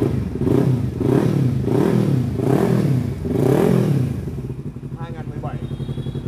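Kawasaki Ninja 300's parallel-twin engine blipped about five times, each rev climbing and dropping back. It then settles to a steady idle for the last couple of seconds.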